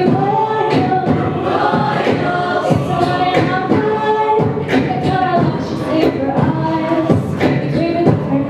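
A cappella choir singing, a female soloist on a microphone leading over the group's backing voices, with a steady beat about twice a second.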